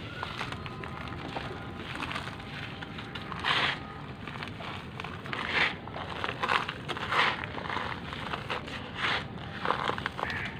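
A compressed charcoal cylinder being crumbled by hand, its granules crunching and falling onto a heap of charcoal on a paper bag. It comes as a series of short, irregular crunches, the strongest from about three and a half seconds in.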